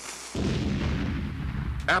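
A struck match flaring with a fading hiss, then a sudden deep boom, like a blast, that rumbles on for about a second and a half.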